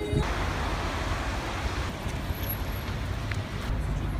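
Steady city street noise: a constant traffic hum and low rumble.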